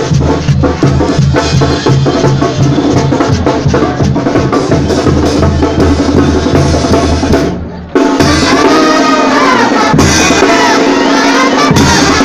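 Live Mexican banda brass band playing in the street: snare drums, a bass drum and clashing cymbals over a deep bass line and brass. About eight seconds in the sound dips for a moment and comes straight back, with the brass lines more prominent afterward.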